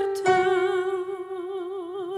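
Operatic female voice singing, with a short note followed by one long note held with vibrato over soft, quiet accompaniment.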